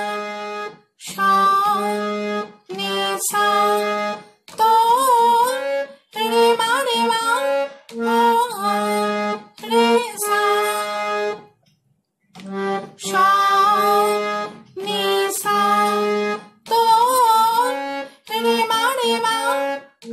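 Harmonium, the hand-pumped reed keyboard, playing a slow melody in short phrases with brief breaks between them and a longer pause about halfway through. Steady low held notes sit under the moving tune.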